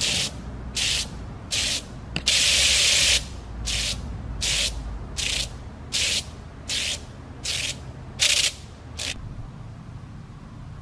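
ANNAX 16x30 electromechanical flip-dot display running a test pattern, its rows of small magnetic discs flipping over in short bursts of clatter about one every 0.7 seconds, with one longer burst of about a second near the start. The bursts stop about nine seconds in.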